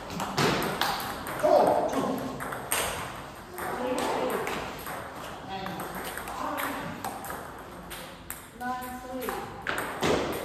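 Table tennis balls clicking off bats and tables in quick, irregular strikes, from rallies on more than one table. Voices can be heard in the background.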